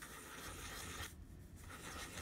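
Fountain pen nib scratching across paper as small loops are drawn: a faint scratchy stroke through the first second, a brief pause, then another stroke starting near the end.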